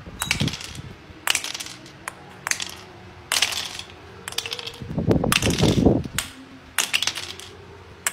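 Small plastic mallet tapping loose the plastic ice blocks of a penguin ice-breaking toy game, with the blocks clattering as they drop onto a glass tabletop. Sharp taps and clatters come every second or so, with a longer clatter around the middle.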